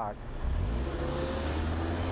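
A car driving slowly past close by: a low engine rumble that comes in about half a second in and holds, with a faint rising whine and a hiss of tyre noise.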